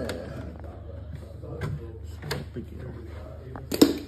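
Hand tools and metal parts being handled: a few scattered clicks and clunks over a steady low hum, with a sharper knock near the end.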